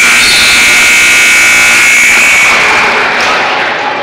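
Gym scoreboard buzzer sounding one loud, steady high-pitched tone for about three seconds, fading out near the end: the signal that time has run out on the wrestling clock.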